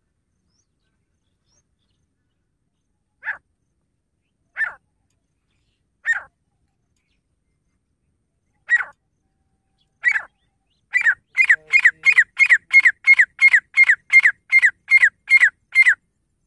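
Grey francolin calling. A few separate calls come a second or two apart, then a fast, even run of repeated notes, about three a second, through the last third.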